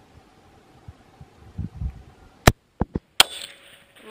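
A .22-250 Remington rifle firing a shot about two and a half seconds in: a loud, sharp report. A second sharp crack follows less than a second later and trails off in an echo.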